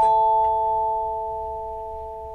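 A bell-like chime sound effect: two clear tones struck together and joined a moment later by a lower third, ringing steadily and slowly fading.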